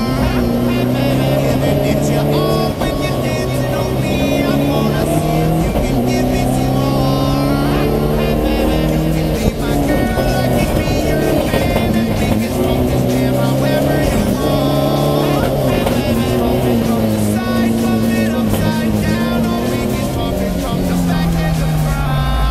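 Race car engine heard from inside the cabin, revving up and dropping back again and again as it shifts through the gears at speed, with music playing over it.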